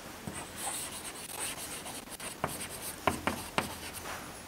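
Chalk writing on a chalkboard: faint scratching strokes, then several sharp taps as the chalk strikes the board in the second half.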